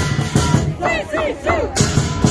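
Lion dance drum and cymbals beating a steady rhythm, with three short high shouts in quick succession about a second in.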